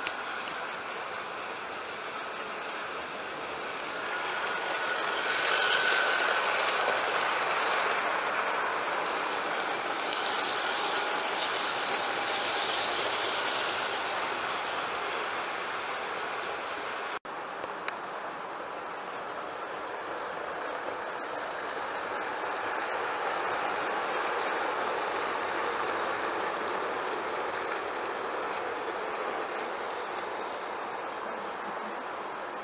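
OO gauge model train running on the track, its motor whine and wheel clatter on the rails growing louder and fading away again, twice.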